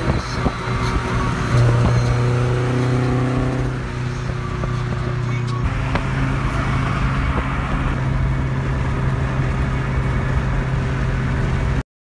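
Cars travelling at freeway speed: a steady low engine drone with road and wind noise. The drone shifts slightly about six seconds in and cuts off abruptly just before the end.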